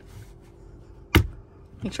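A single sharp snap about a second in as the carpet-covered plastic side panel of a Tesla Model Y's center console is punched by hand into place, its plastic clips snapping home.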